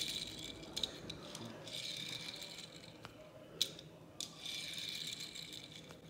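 A die-cast Hot Wheels car rolling across a granite countertop, its plastic wheels on steel axles giving a light rattling hiss that comes and goes in three stretches, with a few small clicks. The first roll is on wheels not yet sanded.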